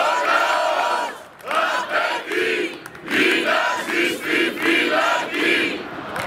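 Large crowd of protesters chanting a slogan in unison, the massed voices coming in rhythmic phrases with short breaks between them.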